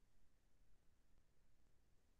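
Near silence: faint low room tone from the recording.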